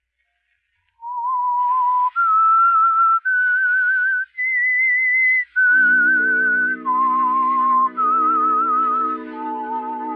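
A whistled theme melody with vibrato. It starts after a second of silence, with held notes stepping upward to a high note and then back down. About halfway through, sustained orchestral chords join underneath.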